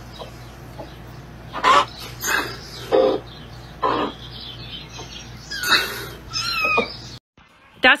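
Domestic hens clucking in a straw nest box: a handful of short, separate clucks and squawks spread over several seconds, over a low steady hum. The sound cuts off abruptly near the end.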